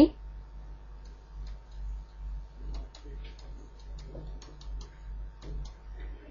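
Faint, irregular ticks and light scratches of a stylus on a pen tablet while writing by hand, over a steady low hum.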